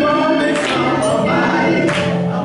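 Gospel singing by several voices together, with a woman's voice leading at the microphone, holding sustained notes.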